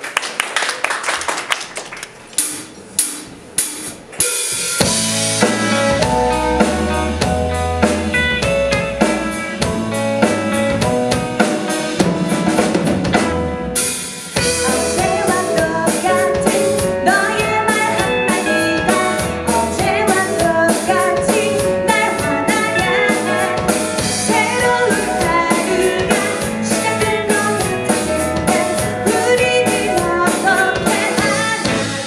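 A live rock band starting a song: a few evenly spaced sharp clicks, like a drummer's count-in, then about five seconds in the full band comes in with drum kit, bass and electric guitar. The band drops out briefly near the middle, then plays on.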